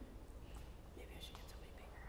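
Faint whispering over a low steady room hum.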